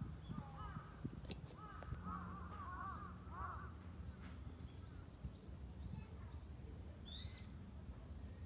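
Birds calling: a run of repeated, arched calls in the first half, then quicker, higher chirps in the second half, over a faint low rumble.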